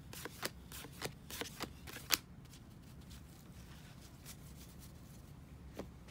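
Cardboard baseball cards being handled and flipped by hand: a quick run of papery flicks and taps in the first two seconds, the sharpest about two seconds in, then only faint occasional rustles.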